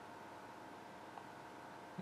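Faint steady hiss of room tone, with a brief soft tick about a second in.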